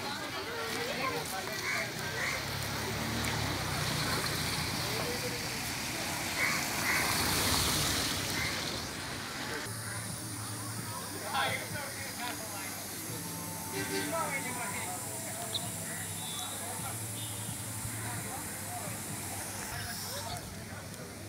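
Street ambience with indistinct voices of people talking around the stalls, over a steady background noise; a hiss swells briefly about seven seconds in.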